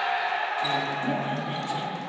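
Basketball game noise in a gymnasium: the ball bouncing on the hardwood court, with voices from the bench and crowd reacting to a made basket.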